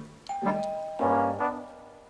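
A two-note ding-dong doorbell chime, the higher note first, over cartoon music led by brass playing short notes.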